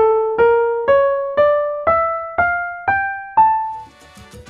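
The A Phrygian dominant scale played on a keyboard instrument, eight single notes ascending one at a time over an octave from A to A, about two notes a second, each struck and left to die away.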